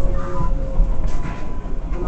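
Inside an R188 subway car under way on the 7 line: a steady low rumble of the wheels on the track, with faint steady whining tones above it.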